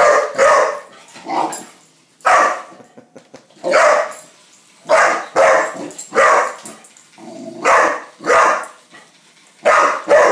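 A young dog barking repeatedly at a toy spider on the floor: about a dozen short barks, some in quick pairs, spaced under a second apart.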